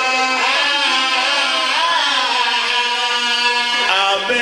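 A voice in sung, melodic recitation, holding long notes that waver and bend in pitch.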